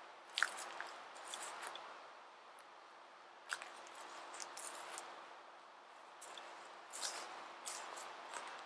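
Faint crunching footsteps of a person walking on the ground, coming in about four short runs of steps.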